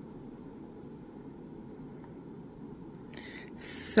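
Quiet room tone with a steady low hum. Near the end comes a sharp hissing breath, and a woman's voice starts to speak.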